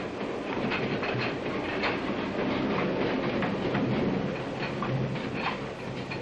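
Train running on the rails: a steady rumble with occasional clicks of the wheels over the rail joints.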